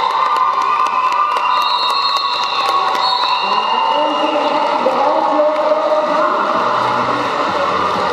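A crowd in a sports hall cheering and shouting, with many voices overlapping and held calls, and scattered sharp clacks.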